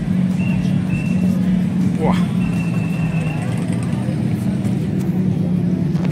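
An engine running steadily with a low, even drone. Two short high steady tones sound in the first half.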